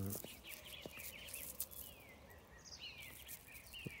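Birds chirping in the background: a scattering of short, falling chirps, with a few faint clicks.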